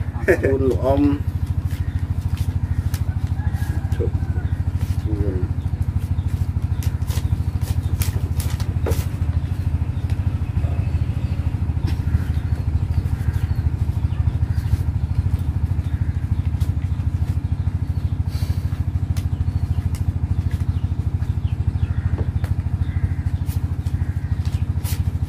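A small engine running steadily at idle, a low even drone throughout. A few brief voice fragments come near the start.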